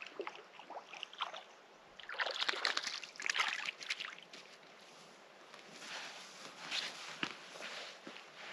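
Water sloshing and splashing at a lake's edge, loudest in a run of splashes about two to four seconds in and again later on, with a sharp knock near the end.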